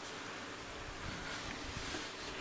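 Faint steady hiss of room and microphone noise, with a few light rustles from hands adjusting a plastic action figure.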